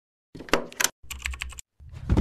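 Computer keyboard typing clicks, a sound effect laid over an animated logo intro: a few sharp key clicks, then a quicker flurry of them, with a deeper sound swelling in near the end.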